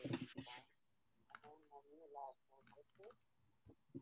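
Faint voice of the person on the other end of a phone call, with a few sharp clicks.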